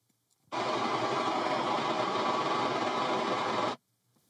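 Room EQ Wizard's speaker calibration signal, a steady noise hiss played through a loudspeaker for setting the input level. It starts about half a second in and cuts off suddenly near the end.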